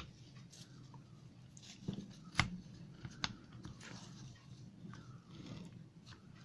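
A handful of faint clicks and light knocks from the metal parts of an open lawnmower roller gearbox being handled, its drive chain and sprockets, the sharpest a little over two seconds in, over a low steady hum.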